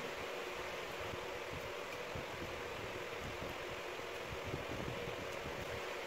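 Steady hiss of room background noise, like a fan, with faint irregular rustling as a comb is pulled through kinky hair.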